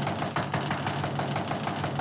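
An electric doorbell held down, ringing without a break as a fast, even rattling buzz.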